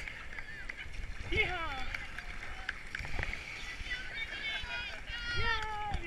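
Kayak running through foaming whitewater: a steady rush of water with a few paddle splashes. A falling shout of "Yeehaw!" comes about a second in, and more voices call out near the end.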